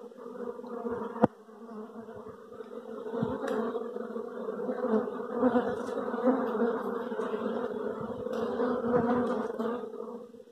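A swarm of honeybees buzzing close up, a steady low drone that grows louder a few seconds in. A single sharp click sounds about a second in.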